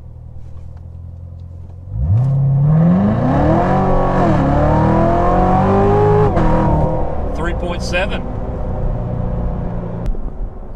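2016 Corvette Z06's supercharged 6.2-litre LT4 V8, heard from inside the cabin during a full-throttle 0-60 run. After a low idle hum it revs up sharply about two seconds in and climbs in pitch. The pitch dips once as at a gear change and climbs again, then falls away a few seconds later to a steady cruise drone.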